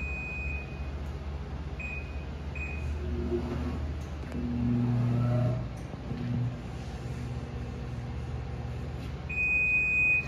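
Challenge Titan 200 hydraulic paper cutter's pump running with a steady low hum, growing louder and heavier for about a second midway as the machine works through a cutting stroke. Short electronic beeps sound three times near the start and a longer beep near the end.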